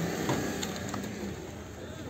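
Low, steady background of distant voices mixed with vehicle noise, with no single sound standing out.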